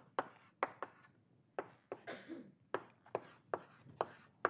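Chalk writing on a blackboard: a run of about ten sharp taps and short strokes, irregularly spaced, as the chalk strikes and drags across the slate.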